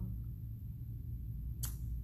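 Pause between speech: a steady low hum of room tone, with one brief sharp noise near the end just before talking resumes.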